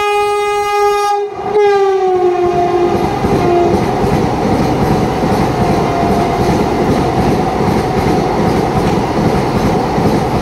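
Vande Bharat Express electric multiple unit sounding its horn in one long steady blast. The horn's pitch drops about a second and a half in as the front of the train passes, then fades. After that comes the steady, loud noise of the coaches running past.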